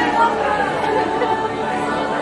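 Several people chattering at once, their voices overlapping.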